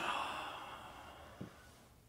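A man's long, breathy sigh, loudest at the start and fading away over about a second and a half, with a soft low thump near its end.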